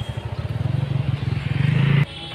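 Street traffic: a vehicle engine running with a fast, low throb that grows louder as it comes close, loudest near the end before cutting off suddenly.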